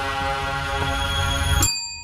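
A sustained, ominous music chord cuts off abruptly about one and a half seconds in, and a single ding from a desk service bell rings on in its place.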